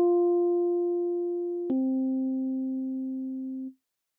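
Two keyboard notes played one after the other as a descending perfect fourth: F held and slowly fading, then about two seconds in the C a fourth below, which also fades and stops shortly before the end.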